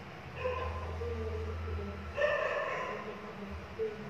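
Two short pitched animal calls in the background, a weaker one about half a second in and a louder one a little after two seconds, over a low steady hum.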